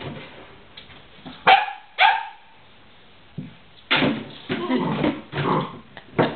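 Goldendoodle puppy giving two sharp barks about half a second apart, then, a couple of seconds later, a run of scraping and crackling as the plastic milk jug is nosed and pushed about on the wood floor.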